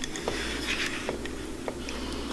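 Quiet handling sounds of stainless steel wires being worked by hand around a wooden ring mandrel: light rubbing with three small clicks, over a low steady hum.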